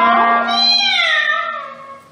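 Soprano and clarinet in a comic cat-meow imitation, ending a phrase on one long note that slides downward like a "miao", over a held low note. The sound fades away near the end.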